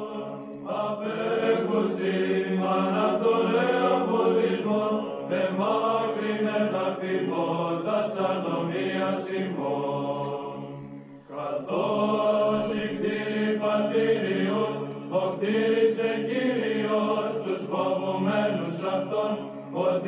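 Church chant sung in slow, held notes. It breaks off briefly about eleven seconds in, then starts again.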